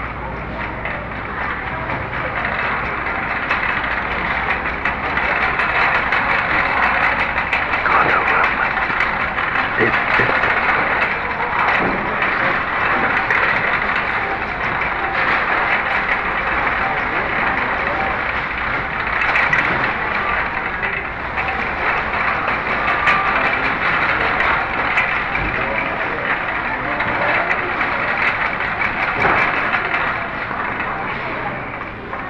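Shop background sound: indistinct voices over a steady rattling, clattering noise, scattered with many small clicks.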